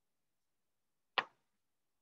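A single short, sharp click about a second in, against near silence.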